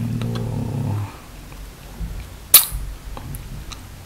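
A man's low, drawn-out vocal sound trailing off within the first second, then a single sharp click or knock about two and a half seconds in, followed by a few faint ticks.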